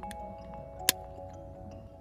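Background music with soft held tones, and one sharp click about a second in: the plastic halves of a key fob case snapping together.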